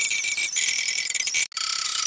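The film's soundtrack played back many times faster than normal, so high and fast that it becomes a rapid high-pitched chattering buzz, with a brief break about one and a half seconds in.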